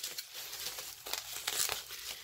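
Packaging being crinkled by hand as a makeup item is unwrapped or handled: a dense run of small crackles.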